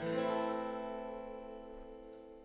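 Acoustic guitar: a final chord strummed once and left to ring out, fading slowly away.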